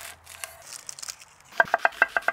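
Chef's knife cutting through an onion on a wooden cutting board: soft, faint cutting at first, then a quick run of sharp knife taps on the board in the last half second as the onion is sliced.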